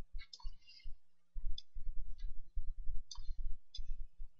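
Computer mouse clicking several times at irregular intervals while a vector is dragged on screen, over low, irregular rumbling knocks picked up by the microphone.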